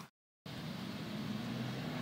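A brief gap of dead silence at an edit cut, then a steady low mechanical hum over outdoor background noise.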